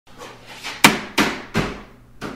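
Three hammer blows against the top of a brass-framed glass shower enclosure, knocking it loose for demolition. Each blow rings out briefly and fades; the first, just under a second in, is the loudest.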